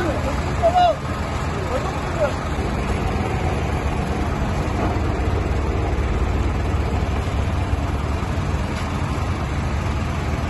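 Tow truck's engine running steadily with a low rumble while its crane lifts a van onto the truck bed. People's voices call out in the first couple of seconds.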